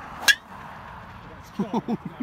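Golf driver striking a ball off a tee: one sharp click with a brief ring, about a quarter second in. Short bursts of voices follow near the end.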